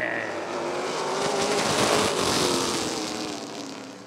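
Pack of vintage stock cars accelerating away at the green flag, their engines rising in pitch; the noise swells to a peak about halfway through, then fades as the field pulls away.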